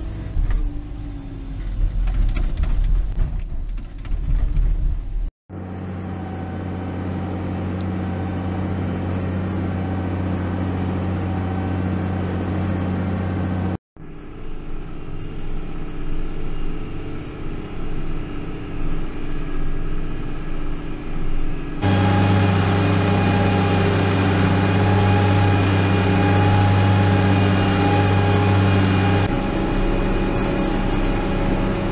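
Farm tractor engine running, heard from inside the cab, with an uneven rumble at first and then a steady drone. The drone grows louder in the last third and eases off near the end. The sound cuts out briefly twice.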